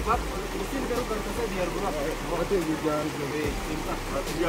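Several men's voices calling to each other as they heave a large rock, over the steady rush of a shallow stream.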